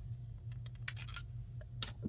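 A few light clicks and taps from handling a fountain pen on a wooden desk, the clearest one near the end, over a steady low hum.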